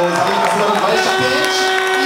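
Male commentator speaking over a light background haze, drawing out a long, level hesitation sound mid-sentence.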